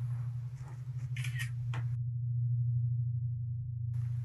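A steady low hum runs throughout, with faint room noise and a brief high squeak about a second in. Halfway through, the room sound cuts out suddenly, leaving only the hum.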